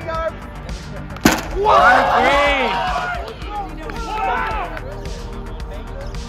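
A single sharp smack about a second in, then loud excited voices whooping for a couple of seconds, with a shorter burst of voices later, over background music.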